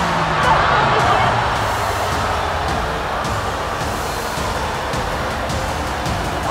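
Background music with a steady, even wash of sound.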